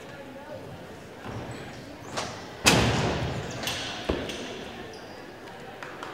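A loud thud about two and a half seconds in, echoing in a large hall: a gymnast landing his rings dismount on the landing mat. Fainter knocks come just before and a second or so after, over background chatter.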